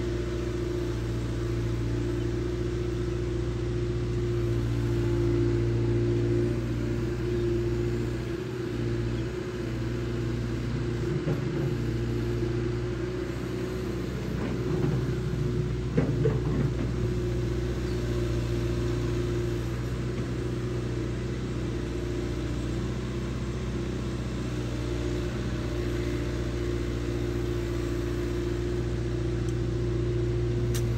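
Long-reach excavator's diesel engine running steadily, with a brief clatter from the working arm and bucket about halfway through.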